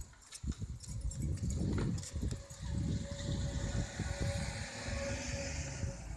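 Wind buffeting a phone microphone outdoors, with scattered handling clicks and a faint steady hum in the second half.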